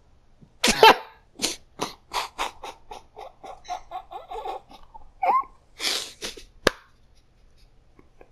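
A person's wordless vocal sounds, close to the microphone: a loud sudden burst about a second in, then a run of short, quick bursts for a few seconds, another burst near the end, and a sharp click just after it.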